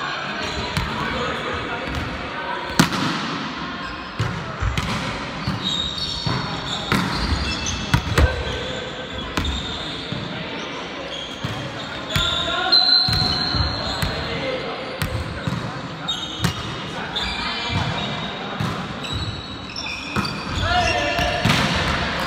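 Indoor volleyball play echoing in a gym hall. There are sharp smacks of hands on the ball, strongest about three and eight seconds in, brief sneaker squeaks on the court floor, and players calling out to one another.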